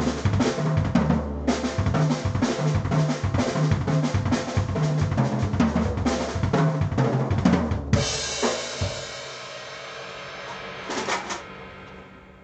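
Acoustic drum kit played fast, with double-kick bass drum under snare and cymbal hits. About eight seconds in it ends on a cymbal crash that rings out and dies away, with a few light hits shortly before the end.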